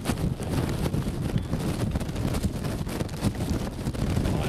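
Wind buffeting the camera microphone: an uneven, gusty low rumble.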